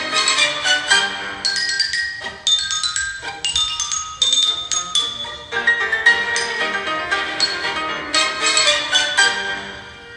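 Recorded orchestral music in which a xylophone plays a quick lead melody of short, dry wooden notes.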